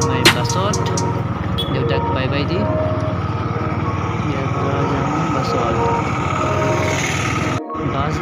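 Motor scooter running along a road, its engine and road-and-wind noise heard from the seat, under music and voices. The sound cuts out briefly near the end.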